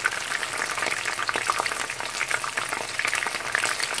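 Chicken pieces deep-frying in a basket of hot oil: a steady, dense crackling sizzle.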